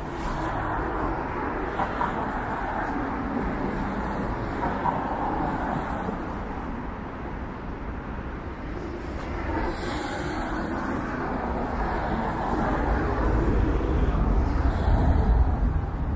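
City street traffic, cars passing on a wide road, with a deeper rumble growing louder near the end.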